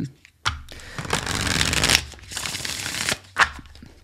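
A tarot deck being shuffled by hand: card-on-card rustling starting about half a second in, with a short break after about two seconds, then a shorter run of shuffling that stops about three seconds in.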